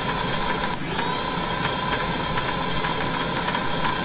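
Simulated conveyor belts running in the Factory IO factory simulator: a steady machine hum with a high steady tone and faint irregular ticks. The tone drops out briefly about a second in.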